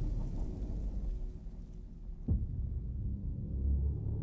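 Film-trailer sound design: a deep, steady low rumble, with one short sharp hit that drops quickly in pitch a little over two seconds in.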